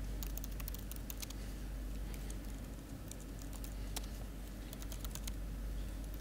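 Typing on a laptop keyboard: irregular light key clicks, in a quick flurry at the start and a few more around the middle, over a steady low hum.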